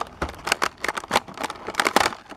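Old, brittle plastic blister pack of a carded action figure being pried open by hand: an irregular series of crackles and snaps as the yellowed plastic cracks and breaks.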